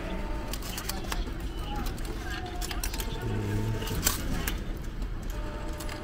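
Coins clicking and clinking as they are fed by hand into a subway ticket vending machine's coin slot, over a murmur of voices.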